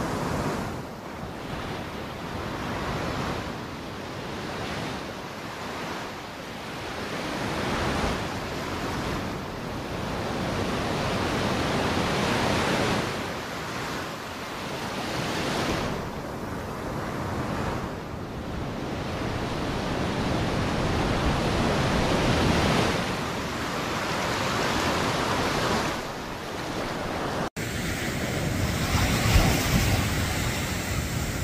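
Ocean surf washing around the shallows, swelling and ebbing every few seconds. Near the end it breaks off abruptly and gives way to a steadier hiss of surf.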